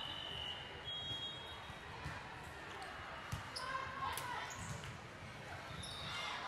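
Volleyball being played in a large, echoing gym. A short, high whistle sounds twice near the start, then the ball is struck with sharp smacks about three and four seconds in, over steady background chatter from the hall.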